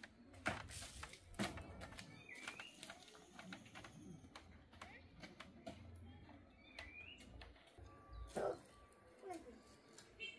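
Quiet outdoor ambience: a bird gives a short rising chirp twice, about four seconds apart, over scattered faint clicks and knocks.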